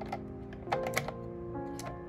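Plastic pens clicking and tapping against each other and against a frosted plastic desk organizer as they are set into its shelf, several sharp clicks close together around the middle, over background music.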